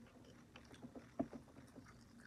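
Mostly quiet, with a few faint soft clicks a little over a second in: small eating and handling sounds as a McDonald's French fry is lifted to the mouth.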